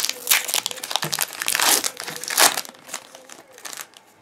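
Foil booster pack wrapper crinkling and rustling as a pack of trading cards is torn open and handled, dense for about two and a half seconds and then dying away.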